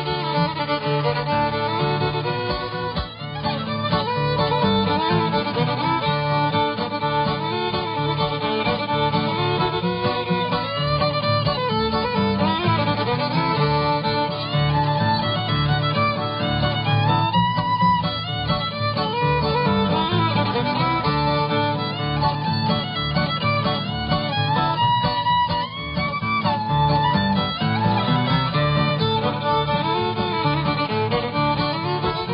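Solo fiddle playing a lively old-time tune, with guitar accompaniment keeping a steady, even bass rhythm underneath.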